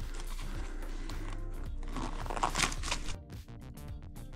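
Background music under the rustling and crinkling of a padded fabric battery cover being opened and handled, loudest about two and a half seconds in.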